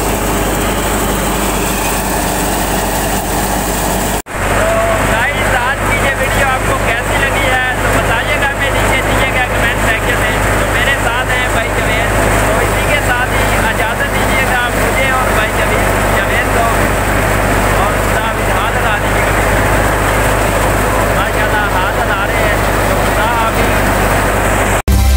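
Tractor-driven wheat thresher running, a steady mechanical drone with a constant low hum.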